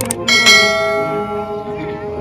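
A mouse click, then a bell chime struck about half a second in that rings out and fades: the sound effect of a YouTube subscribe-button animation. It plays over ongoing devotional music.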